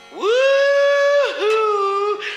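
A man's high sung "woo", sliding up into a long held note and then dropping to a lower held note about halfway through.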